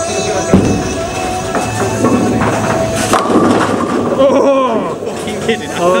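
Background music with singing, over bowling-alley sound. About half a second in there is a single loud thud, a bowling ball landing on the lane as it is released.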